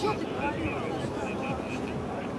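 Background chatter of people talking over a steady low rumble.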